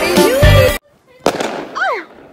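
Background music with a heavy beat cuts off abruptly under a second in. A single firework bang follows, with a decaying crackling tail and a short falling tone near the end.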